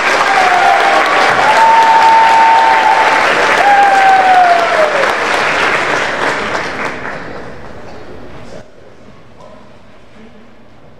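Audience applauding, swelling up quickly and fading out about eight seconds in. Over the clapping a voice in the crowd cheers with one long held call that drops in pitch at its end.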